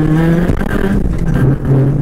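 Rally car engine heard from inside the cabin, holding a steady high note that drops suddenly about half a second in, then running at lower, uneven revs.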